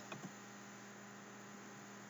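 Faint, steady electrical hum with a low hiss under it: the background noise of the recording.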